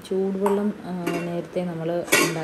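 Metal clinks of a utensil against a steel bowl of crumbly flour dough, a sharp clink near the start and another about half a second in. Under them a voice holds steady pitched notes with short glides between them.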